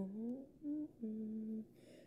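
A young woman humming a tune unaccompanied: a held note that slides upward, a short higher note, then another held note.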